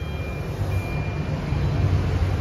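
Low steady rumble of a vehicle engine idling nearby, heard from inside a parked car's cabin, with a faint thin high tone coming and going.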